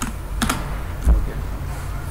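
A few computer keyboard keystrokes: a quick pair of key clicks about half a second in and a heavier key press about a second in, as a web search is entered.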